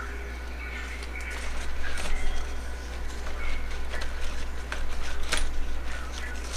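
Rustling and light crackling of thick, waxy Hoya cardiophylla leaves and vines being handled and unwound from their supports, with a couple of sharper clicks, over a steady low hum.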